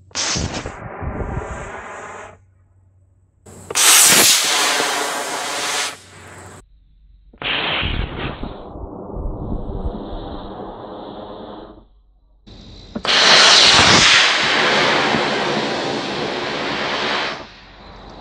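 Estes D12-3 black-powder model rocket motor firing at lift-off, heard four times in a row as the launch is replayed: each a loud rushing hiss lasting two to four seconds that cuts off sharply.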